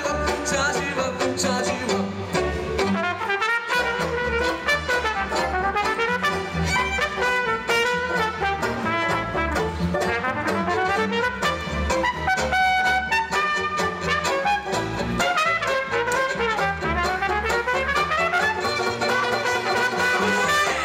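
Live folk-jazz band playing an instrumental break: trumpet, violin, upright double bass and banjo together, with fast rising and falling runs of notes.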